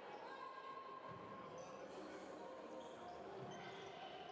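A handball bouncing on the wooden floor of a large sports hall during play, with voices carrying through the hall.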